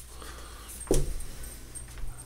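A single dull thump about a second in, over low steady room noise.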